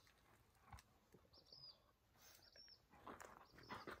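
Faint small bird giving short, high chirps about once a second, over quiet outdoor background, with a few soft crunching steps on gravel near the end.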